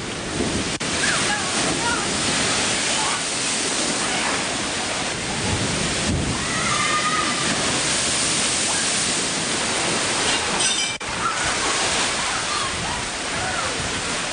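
Tsunami floodwater rushing and surging in a loud, steady roar, with faint voices shouting over it.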